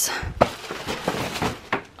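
Paper gift bags and tissue paper rustling and bumping as they are set down, with a sharp knock about half a second in.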